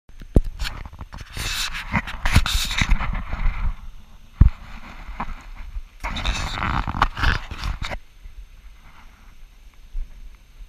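Handling noise on a GoPro's built-in microphone: a run of knocks, clicks and rubbing as the camera is held and set up, in two bouts with a lull in between, then quieter near the end.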